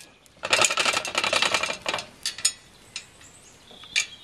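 Steel chain of a swing-arm campfire grill rattling as the grill is lowered: a quick run of metal clinks lasting about a second and a half, then a few single clinks.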